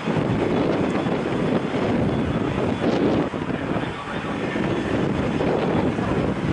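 Boeing 767-300 jet engines in reverse thrust during the landing rollout, a steady deep rumble.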